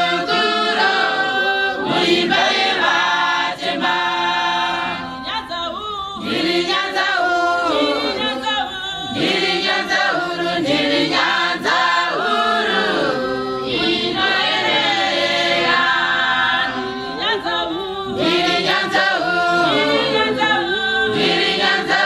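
A congregation singing a Shona hymn a cappella: many voices together in harmony, unaccompanied and unbroken.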